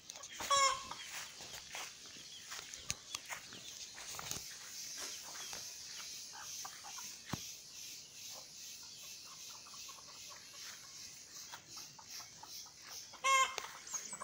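Chickens calling: a short, loud squawk about half a second in and another near the end, with quieter clucking between them. A faint, steady high hiss runs underneath.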